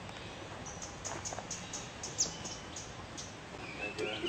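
A small bird chirping in the trees: a quick run of short, high chirps, about five a second, with one louder chirp in the middle, then it stops. Steady outdoor background hiss throughout.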